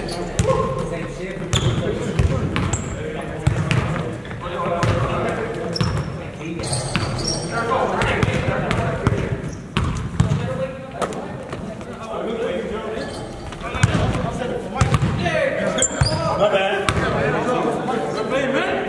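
Basketball bouncing on a hardwood gym floor, mixed with indistinct players' voices.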